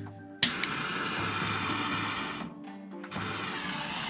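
Propane torch lighting with a click about half a second in, then the steady hiss of its flame. The hiss drops out briefly near three seconds and comes back. Background music plays underneath.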